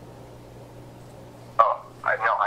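Pause on a recorded phone call: steady line hiss with a faint low hum. Near the end a voice comes in briefly.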